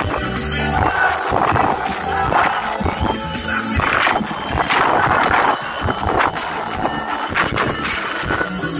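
Live forró band playing loudly through a PA: electric bass and drums under male and female lead vocals.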